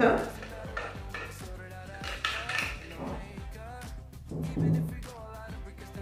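The threaded plastic base ring of a Britânia BLQ950 blender's glass jar is unscrewed and taken off, with scattered small clicks and knocks of plastic against glass. Quiet background music plays under it.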